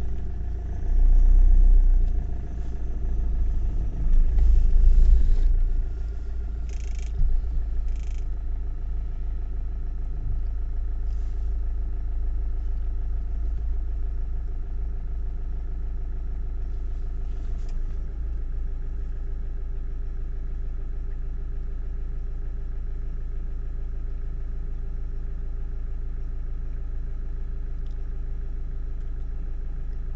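A vehicle engine idling steadily, with two louder low rumbles in the first six seconds.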